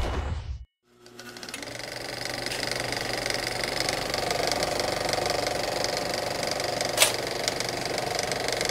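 A short animation sound effect ends. After a brief gap, a race car's engine fades in and runs at a steady high speed with a fast, even pulse, and there is one sharp click near the end.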